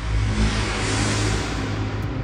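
Logo-reveal sound effect: a dense, sustained whoosh of noise over a deep low drone, at full strength and holding steady, leading into an electronic music sting.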